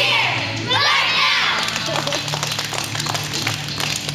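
Young children singing and shouting along to a praise song, their high voices rising in two loud calls in the first second and a half, then hand claps over the music.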